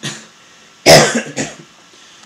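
A man coughing close into a handheld microphone: a short cough at the start, then a much louder one about a second in that trails off.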